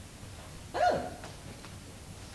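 A single short yelp-like vocal cry about a second in, falling in pitch, from a performer on stage.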